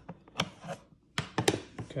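Several sharp plastic clacks and knocks from a small pocket digital scale as its hinged lid is closed and it is handled on a hard tabletop. The loudest knock comes about one and a half seconds in.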